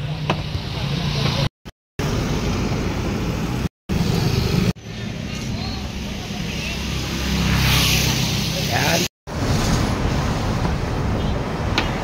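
Road traffic noise: a steady rumble of passing vehicles that swells as one goes by about eight seconds in, broken by three brief silences.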